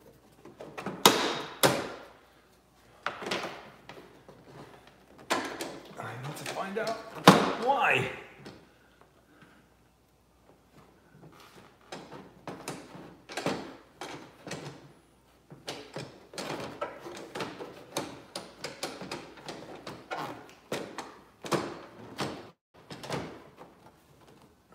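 Porsche 991 tail-light unit being pushed and worked against the rear bodywork: a run of irregular knocks, clicks and plastic thunks, loudest in the first third. The light is not seating, which the owner later puts down to its bolt being done up a little too tight.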